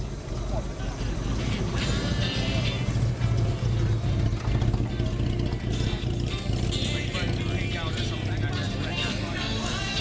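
A classic Jaguar XK roadster's engine running with a steady low hum as the car rolls slowly past, under crowd chatter and music.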